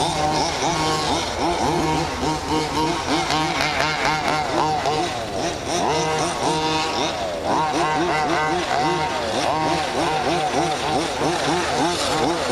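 Two-stroke petrol engines of more than one 1/5-scale RC car racing, revving up and down over one another with pitches rising and falling every second or so.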